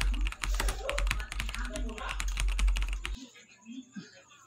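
Rapid crackling and clicking with a low rumble as a large plastic water jug is gripped, lifted and shifted. It cuts off suddenly about three seconds in.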